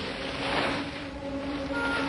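A parcel's paper wrapping rustles as it is opened, in a brief swell about half a second in, over a soft, sustained orchestral film score.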